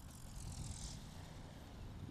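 Main rotor blades of an Align T-REX 450L electric RC helicopter swishing as they wind down after an autorotation landing, with the motor off. A brief high hiss comes in the first second.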